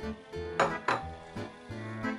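Two quick clinks, about a third of a second apart, of a small bowl knocking against the rim of a larger bowl as the last of the grated cheese is tipped out.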